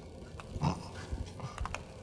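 A brief muffled human vocal sound, then a few faint light clicks, as paint is flicked in small splatters.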